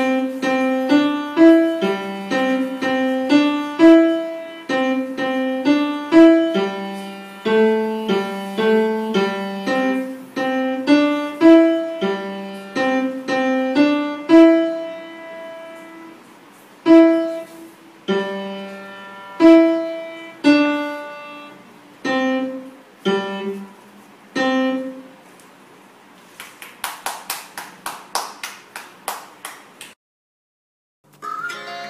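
Upright piano played by a beginner: a simple, slow tune of single notes over a plain left-hand part, stopping about 25 seconds in. Near the end, a quick run of about a dozen sharp claps.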